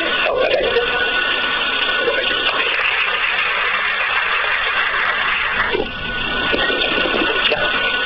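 Indistinct voices and music in the background over a steady, dense noisy din, with a faint steady tone running through it; no clear words.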